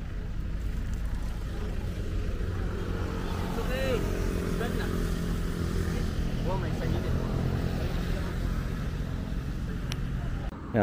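Steady low rumble of road traffic, with faint distant voices briefly about four and seven seconds in.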